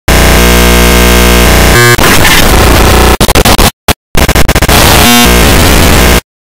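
Harsh, heavily distorted and clipped audio at full loudness. It starts as a buzzy held chord of tones, then turns into a dense noisy racket that stutters and cuts out briefly near the middle.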